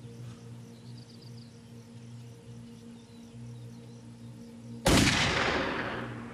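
A single gunshot about five seconds in, sudden and loud, fading away over about a second. Before it there is a low, steady music drone with faint high chirps.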